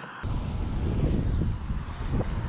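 Wind buffeting the microphone: a steady rumbling noise, heaviest in the low end, starting just after a sudden cut a moment in.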